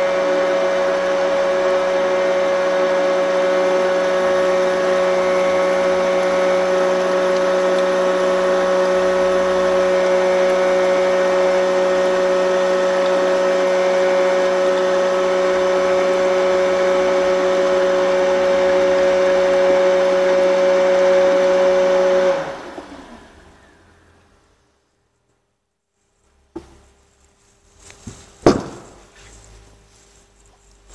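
FLUX F457 electric motor driving an F427 sanitary drum pump, running steadily with a high whine as it pumps liquid through the nozzle into a bucket. About 22 seconds in the batch controller shuts it off at the preset volume and the motor winds down, falling in pitch. A couple of faint knocks come near the end.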